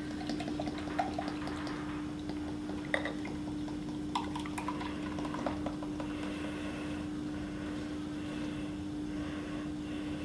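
Beer poured in a slow, steady stream from a 40-ounce glass bottle into a glass mug, fizzing as it foams up into a head. A few light clicks sound during the pour.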